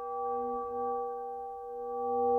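Background music: a sustained, bell-like ringing tone with several overtones that swells and wavers slowly in level.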